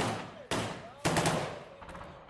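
Gunfire: three sharp shots about half a second apart, the last with a quick second crack right after it, each trailing off in a long echo.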